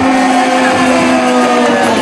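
A man's voice holding one long, slightly falling note into a microphone through a loudspeaker system, over a noisy background haze.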